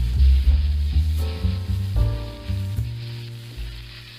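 Leftover rice and egg sizzling in a stainless steel wok as a wooden spatula stirs it, under background music with a strong bass line.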